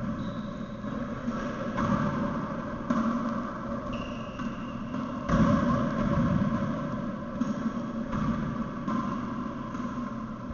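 Sounds of play in an enclosed racquetball court: a steady low rumble with several dull thuds, the loudest about five seconds in, and two brief high squeaks, one near the start and one about four seconds in.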